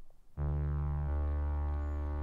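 Background music: a low, sustained synthesizer chord starts suddenly about half a second in and holds steady.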